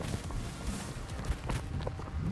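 Outdoor wind rumbling on a handheld camera's microphone as the camera is swung around, with a few faint ticks in the second half.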